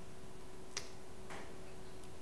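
Quiet room hiss with a faint steady hum, broken by one sharp click about three quarters of a second in and a softer, brief noise about half a second later.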